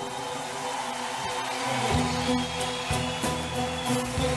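An orchestra plays an instrumental passage of an Arabic song: held string chords, with a few short percussive strikes about two to three seconds in.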